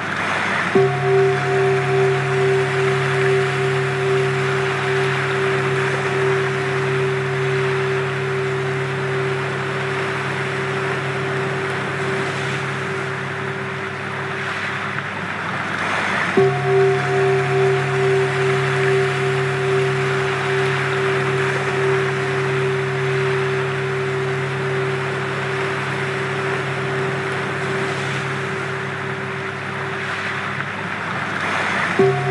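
Sound-healing drone of a few steady held tones over a constant surf-like rushing. The tones stop and come back in about a second in and again about halfway, wavering at first before they settle.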